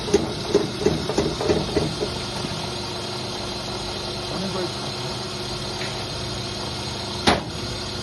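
Engine running steadily at idle, powering an interlocking block-making machine while its levers are worked, with a single sharp knock about seven seconds in.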